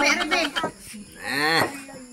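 Brief speech, then a single drawn-out call whose pitch rises and then falls, about half a second long, a little past the first second.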